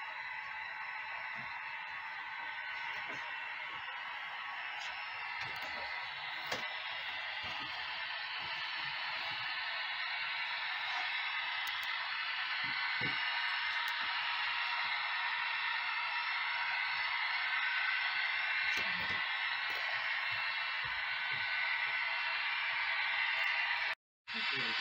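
HO-scale model diesel locomotives pulling a long freight train around a helix: a steady running hiss of motors and metal wheels on rail, growing gradually louder as the train nears.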